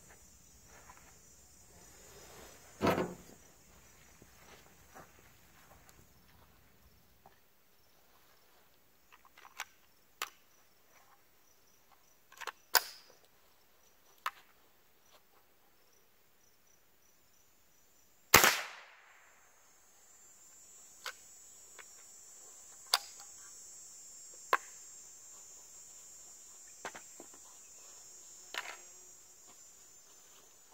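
A single .22 Long Rifle rifle shot, a sharp crack with a short ringing tail about eighteen seconds in, the loudest sound. Scattered clicks and knocks of rifle handling come before and after it, over a steady high insect buzz.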